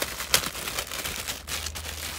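Thin clear plastic bag crinkling as it is handled, in irregular crackles, with one sharper crackle about a third of a second in.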